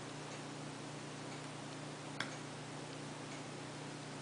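One sharp metallic click about two seconds in from a lock pick working the pin stack of a Corbin small-format interchangeable core, over faint, even ticking about once a second and a steady low hum.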